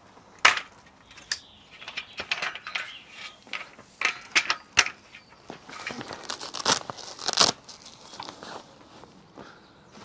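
Vehicle roll-out side awning being pulled out by hand: fabric rustling and crinkling, with sharp clicks and knocks from its frame and poles, the loudest cluster about four to five seconds in.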